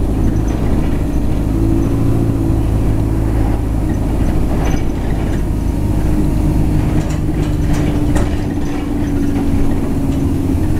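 A London double-decker bus's diesel engine heard from inside the passenger cabin while the bus is under way: a steady low drone with a faint hum. A few short clicks and rattles come through about halfway and again in the second half.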